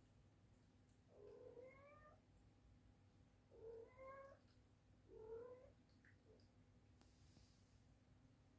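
A kitten meowing faintly three times, each call short and rising slightly in pitch.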